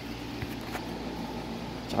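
Steady background hum with a couple of faint clicks.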